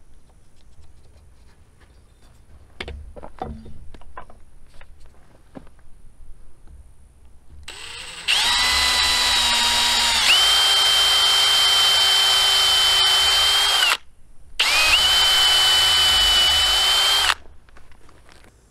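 Electric drill boring a hole into a thick wooden board in two runs: about six seconds, a brief stop, then about three seconds more, a loud steady motor whine whose pitch shifts about two seconds into the first run. Before the drill starts, a few light knocks of tools being handled on the wood.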